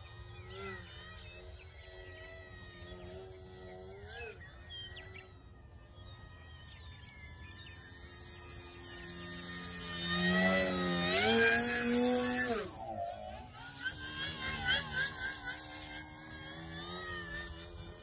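Electric motor and propeller of a 39-inch Twisted Hobbys Super Extra L aerobatic RC plane, its whine rising and falling in pitch with throttle. It is faint for the first half, then loudest as the plane passes close about ten seconds in, and drops away briefly near thirteen seconds before picking up again.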